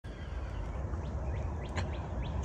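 Birds chirping: a handful of short, rising chirps in the second half, over a low steady rumble.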